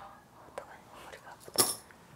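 Soft whispered breathing, then a short sharp clink about one and a half seconds in as a few small coins drop onto the paper on the desk, likely cast for a coin divination.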